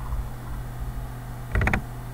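A brief mouse click, a short cluster of sharp ticks about one and a half seconds in, over a low steady electrical hum.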